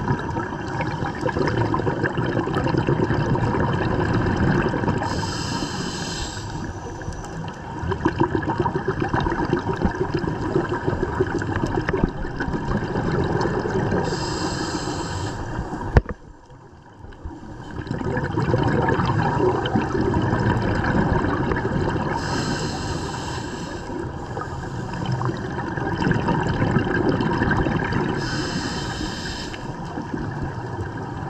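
Underwater scuba sound through a camera housing: bubbling and gurgling from a diver's regulator, with a high hiss of breath recurring about every eight seconds. Halfway through, a single sharp knock as a shark bumps the camera.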